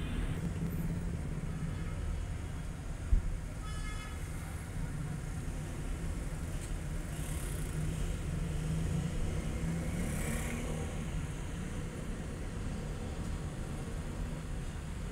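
Steady low rumble of road traffic and vehicle engines. A single sharp knock comes just after three seconds in, and a brief pitched tone, like a horn toot, follows about four seconds in.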